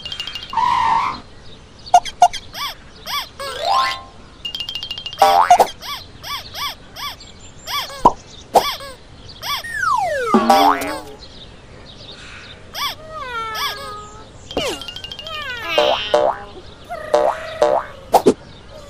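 Cartoon sound effects: a quick string of boings, pops and clicks, with a long falling whistle about halfway through and short squeaky character cries later on, over light music.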